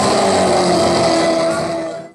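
Live music with men singing into microphones, fading out near the end.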